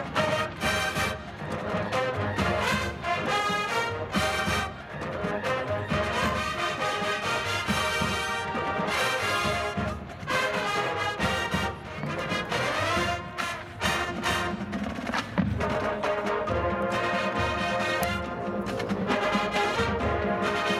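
A college marching band playing live: brass and a drumline with bass drums, performing an upbeat pop arrangement at steady full volume.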